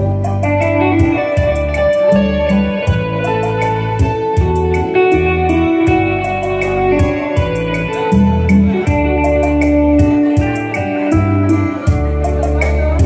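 Instrumental intro of a slow ballad: an electric guitar plays the melody over bass notes and a light, steady beat ticking about four times a second.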